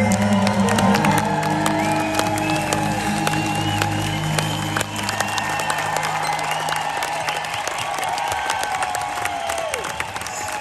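A live band's final chord on acoustic guitars ringing out and fading away about seven or eight seconds in, under a concert crowd cheering, clapping and whistling at the end of the song.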